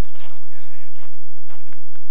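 Footsteps on dry leaf litter, with a brief human voice.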